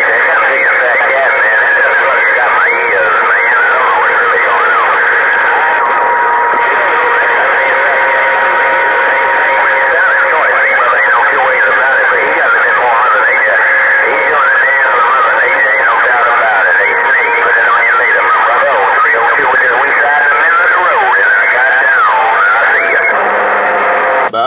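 Radio receiver speaker on CB channel 11 (27.085 MHz) playing a crowded channel: many distant voices talking over one another, garbled and thin, with steady heterodyne whistles under them. This continuous jumble is typical of long-distance skip reception.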